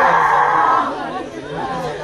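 Women wailing and crying aloud in grief, a mourning lament over a dead son, with voices of the surrounding crowd behind.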